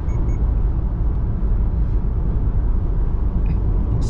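Steady low rumble of road and wind noise inside the cabin of a 2020 Subaru Outback Limited cruising at road speed, with a little wind noise from a slightly windy day.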